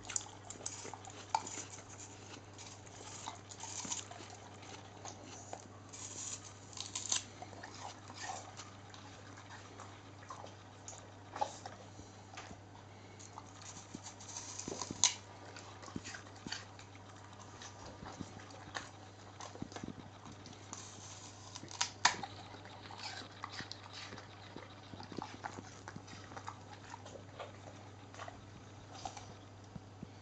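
Staffordshire bull terrier biting and chewing pieces of apple held out by hand: irregular crisp crunches and mouth clicks, the loudest about halfway and two-thirds in, over a steady low hum.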